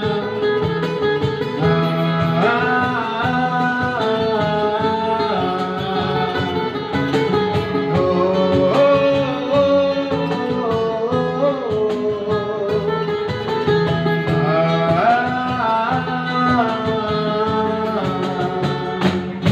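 A man singing a Hindi song live into a microphone, with long held notes that slide in pitch, backed by electric bass, acoustic guitar and a cajon.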